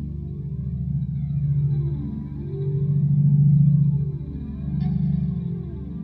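Slow ambient intro of a heavy metal song: low sustained notes swell and fade in repeated waves, with sweeping effect tones above them.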